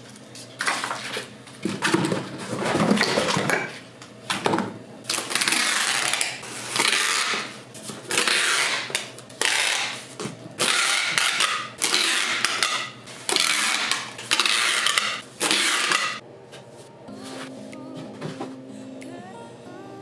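Packing tape pulled off a roll and pressed down to seal cardboard shipping boxes: about a dozen quick pulls, roughly one a second, stopping after about sixteen seconds, then only a faint steady hum.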